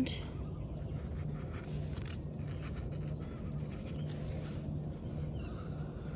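Steady low outdoor ambience: a rumble with a faint hum and a few faint light ticks.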